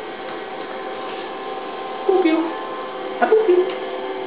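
A steady electrical hum of several fixed tones, with two short vocal sounds, brief laughs or squeaks, about two and three seconds in.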